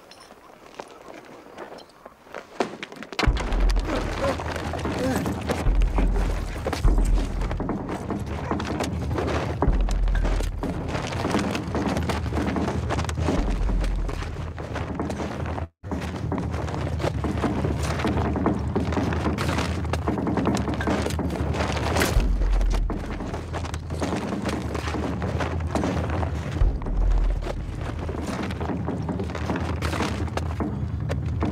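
Soundtrack of a film's violent outdoor scene played through a video call: loud low rumbling with thuds and voices, starting about three seconds in, with a brief dropout near the middle.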